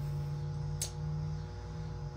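A steady low hum with a few faint sustained tones over it, broken by a single sharp click a little before a second in.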